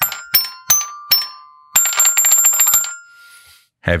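Fisher-Price alligator toy xylophone played with its key buttons, which strike the metal plates like an old toy piano: four single chiming notes, then a quick flurry of repeated strikes for about a second that rings on briefly and fades.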